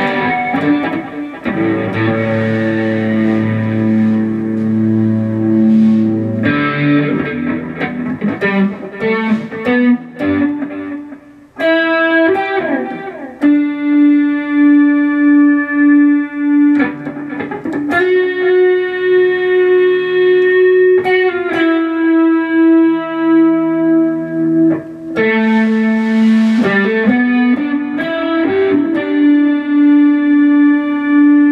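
Electric guitar playing a slow single-note lead melody, long held notes with quick runs between them, and a short break about eleven seconds in. It is a practice run at a tune the player has not fully learned yet.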